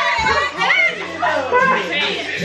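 People's voices talking over one another, loud and lively, without clear words.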